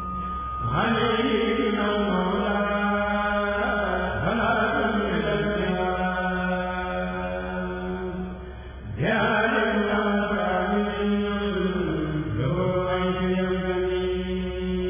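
A kurel, a Senegalese Sufi choir of men, chanting a qasida together over a steady held low note. The voices swell in a rising phrase about a second in, dip briefly near the nine-second mark, then rise again.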